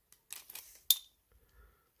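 A steel tape measure is handled and laid against a pocketknife's blade: soft scraping and rustling, then one sharp metallic click with a brief ring a little under a second in.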